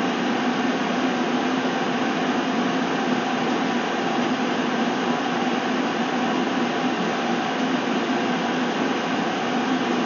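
A steady, unchanging whooshing hum of a running machine, with a low tone under the noise.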